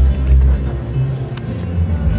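Acoustic guitar being played, with a low rumble underneath and a single sharp click about one and a half seconds in.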